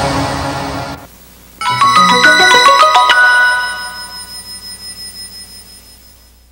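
Closing music cuts off about a second in. After a short gap, a quick run of chiming notes climbs in pitch, a logo jingle, then its notes ring on and fade out.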